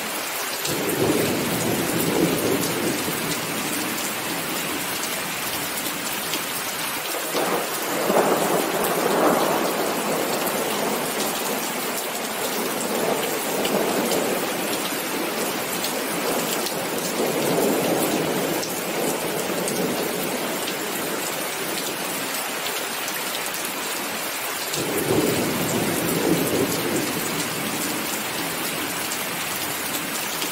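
Heavy rain falling steadily, with thunder rumbling in about five slow rolls, the loudest about eight seconds in.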